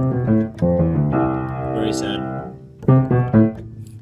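Acoustic piano being played: two short chords, then a chord held for about a second and a half, then another chord struck near the end.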